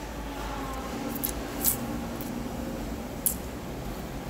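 Steady low background hum with a few short, light clicks scattered through, the sharpest a little after three seconds in.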